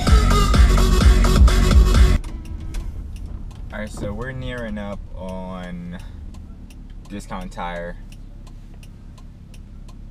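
Hip-hop with heavy bass playing loudly on a car stereo, cut off suddenly about two seconds in. After that comes quieter car-cabin sound with faint, evenly spaced ticks.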